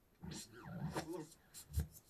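Audio of a track scrubbed back and forth in Cubase with the Behringer X-Touch jog wheel: garbled fragments sliding up and down in pitch, then a single low thump near the end.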